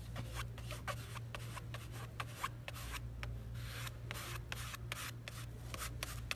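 Spreader scraping chalk paste across a mesh stencil in many short rubbing strokes, over a low steady hum.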